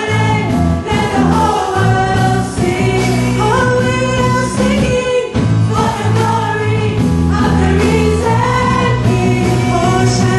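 Live praise-and-worship music: a woman sings lead into a microphone over a band with a drum kit and sustained low notes.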